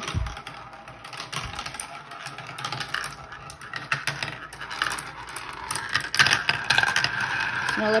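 Marbles rolling and clattering down a plastic Marble Genius marble run, an irregular stream of small clicks and rattles as they hit the track pieces. In the last two seconds a steady whirring tone comes in as marbles circle a plastic funnel.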